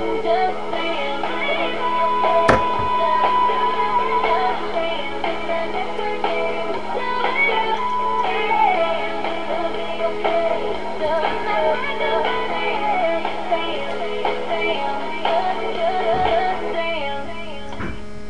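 Recorded pop music playing back, with melodic synth and processed-vocal lines over a steady electrical hum. A single sharp click comes about two and a half seconds in. The music stops near the end, leaving only the hum.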